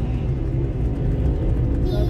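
Road and engine noise heard inside a moving car's cabin: a steady low rumble.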